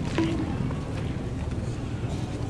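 Street ambience: a steady low rumble of vehicles, with faint voices and a brief voice fragment just after the start.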